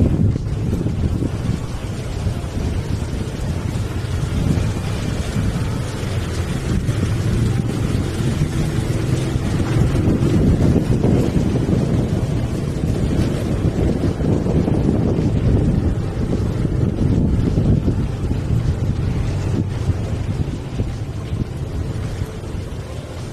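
Wind buffeting the microphone of a moving motorcycle, a steady low rumble with the bike's running noise underneath.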